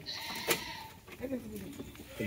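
Ganjam goats bleating faintly, with a single sharp knock about half a second in.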